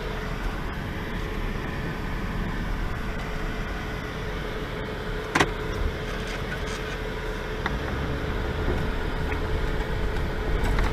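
Inside a vehicle's cabin while driving slowly on a rough dirt track: steady engine and tyre rumble with a steady hum. A single sharp knock about five and a half seconds in.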